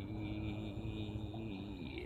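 A man singing unaccompanied, holding one long note on the word 'me' that sags slightly in pitch and fades near the end.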